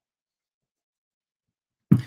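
Silence while a man sips red wine, then, near the end, a sudden short sound from his mouth and throat after he swallows.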